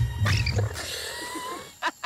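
Cheetah cubs calling, thin high cries that rise slightly in pitch, with a few sharp clicks near the end.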